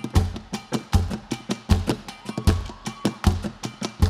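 A live band's drum kit playing a steady beat at the start of a song: a bass drum hit about every three quarters of a second with quick, lighter strokes between, and a faint held note from another instrument in the middle.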